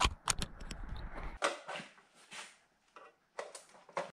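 Handling noise from a hand-held camera: a quick run of clicks and knocks from fingers on the camera body over a low rumble. The rumble then stops suddenly, leaving only a few faint rustles.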